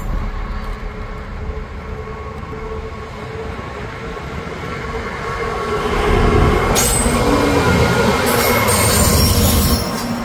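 EWS Class 66 diesel locomotive, with its EMD two-stroke V12 engine, hauling a container freight train past close by: a diesel rumble that grows louder from about halfway, joined by high-pitched wheel squeal over the last three seconds.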